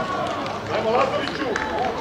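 Indistinct, overlapping voices of sideline spectators and players talking and calling out, with no single clear word.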